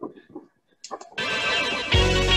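A brief faint sound and a short near-silent gap, then music starts about a second in and plays on, growing louder.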